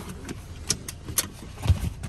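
Handling noise from a handheld camera moving over a car's rear seat: a low rumble with a few light clicks and a soft thump near the end.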